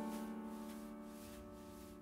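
Soft background piano music: a held chord slowly dying away, with no new note struck.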